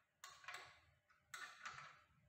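Faint metallic clicks of bolts and washers being handled and fitted by hand into a spin bike's steel stabilizer bracket: four short clicks in two pairs.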